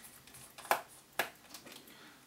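Two sharp, light clicks about half a second apart from a small screwdriver and the screws on a laptop's plastic underside panel while the panel's screws are being removed.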